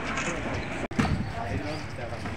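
Indistinct chatter of several people talking. The sound cuts out for an instant about a second in.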